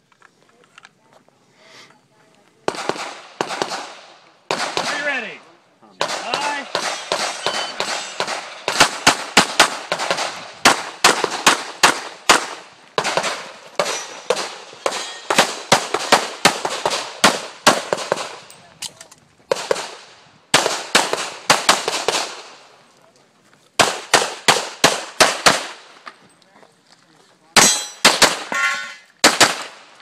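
Semi-automatic pistols fired in rapid strings, several shots a second, each shot with a brief ringing tail. The shooting starts about three seconds in, and there are short pauses between strings.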